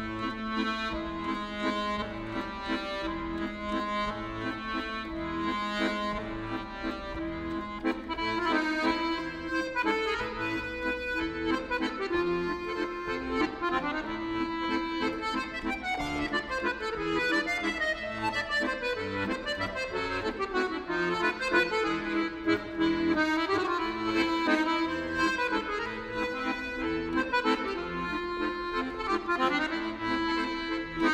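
A Brandoni piano accordion played solo: a melody moving over held notes, starting at once and going on without a break.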